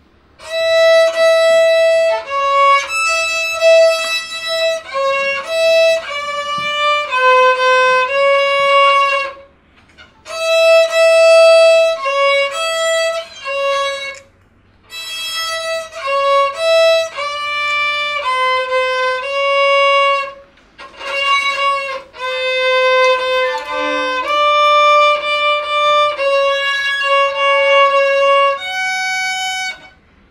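Solo violin played by a young student: a simple bowed melody of one note at a time, in short phrases with brief breaks between them.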